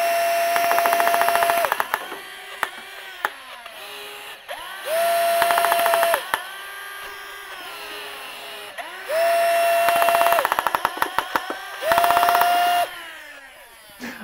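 A 3D-printed fully automatic Nerf Rival blaster firing in bursts. Each time its flywheel and blower motors spin up to a steady high whine, a rapid full-auto clatter of balls is fed through by the pusher wheel, and the whine winds down again between bursts. This happens about four times. The pusher motor is running on a DC boost circuit to raise the rate of fire.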